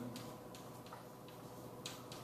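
Chalk on a blackboard while writing: a handful of light, irregular clicks and taps, with a sharper one near the end.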